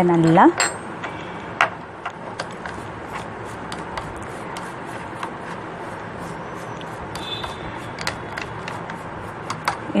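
Toothbrush scrubbing a sewing machine's metal shuttle race to clean off old oil: irregular small scratches and clicks of bristles and fingers on metal over a steady hiss.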